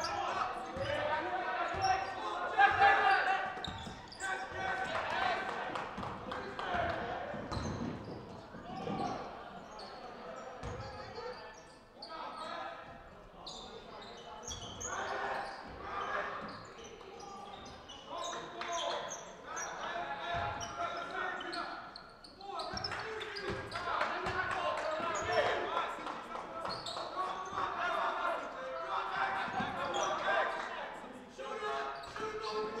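Basketball dribbled on a hardwood gym floor during live play, with players and spectators calling out indistinctly. The sounds echo through a large gymnasium.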